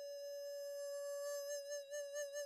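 Soundtrack music over end credits: a single high melodic note held steadily on a reedy or flute-like instrument.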